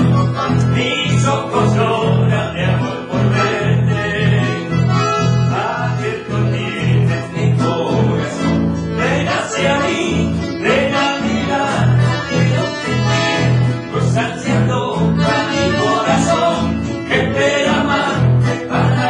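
Acoustic guitars and an accordion playing a folk tune together over a steady bass beat, with a voice singing along.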